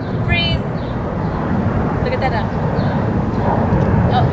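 A young child's brief high-pitched voice, rising, just after the start, with a few fainter vocal sounds later, over a steady low outdoor rumble.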